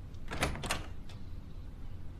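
Wooden wardrobe door being opened: a few sharp clicks and knocks from the doors, the loudest cluster about half a second in.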